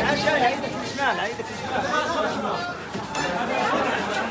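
Several people talking and calling over one another in Arabic: a busy babble of overlapping voices.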